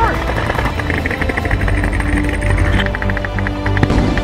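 Music with sustained low notes over a quick run of sharp snaps, with one louder crack near the end.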